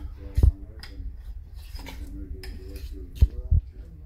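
A spoon scraping half-frozen casein protein ice cream off the side of a bowl and mixing it, with sharp knocks of the spoon against the bowl about half a second in and twice near the end.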